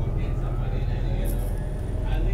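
Steady low rumble of a city bus heard from inside the passenger cabin as it drives.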